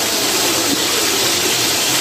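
Chicken pieces and green chillies frying in hot oil, a steady sizzling hiss as the chicken is browned from pink to white.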